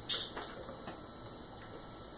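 Quiet room with a few faint, light clicks in the first second or so.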